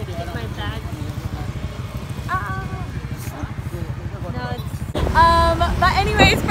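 Motorcycle engine idling with a steady low pulsing under faint voices. About five seconds in it gives way to wind on the microphone and laughing voices while riding.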